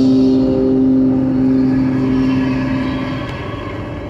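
The song's last chord holding and fading out over the steady road noise of a moving car heard from inside the cabin; about three seconds in the chord is gone and only the car noise remains.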